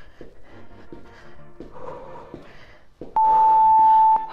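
Workout background music playing quietly, then about three seconds in a loud, steady electronic interval-timer beep, about a second long, marking the end of the 30-second exercise interval and the start of the rest.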